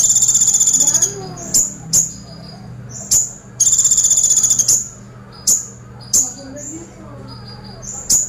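Male van Hasselt's sunbird (kolibri ninja) singing: a loud, rapid, machine-gun-like rattle of about a second at the start and another about halfway through, the 'woodpecker shot' (tembakan pelatuk) prized by keepers, with sharp single chip notes between them.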